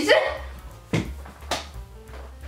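People laughing: the tail of a laugh, then two short yelping bursts of laughter about half a second apart.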